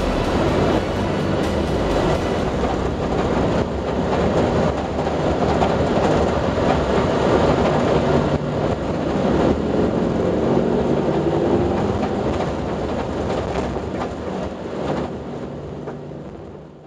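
Cabin noise inside a Toyota rally car driving fast on a rough dirt track: the engine runs under load over a loud rumble of tyres and gravel, with rattles and knocks from the body. The noise eases off slightly near the end.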